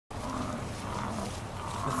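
American bison bellowing, a low call heard near the start and again about a second in, over a steady low rumble.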